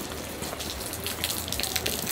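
Steady rain falling on wet pavement and on a glossy bag close to the microphone, with a low rumble underneath.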